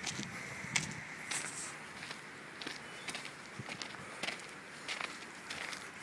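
Footsteps on dirt and gravel: irregular steps and scuffs over a steady background hiss.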